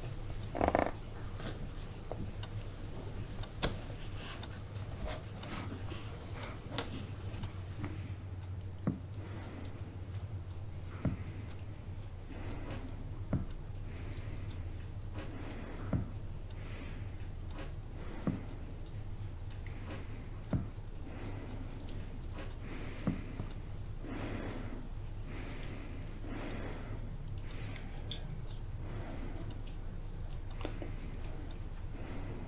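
Liquid dripping about once every two seconds over a steady low hum, with soft sloshing of liquid near the end.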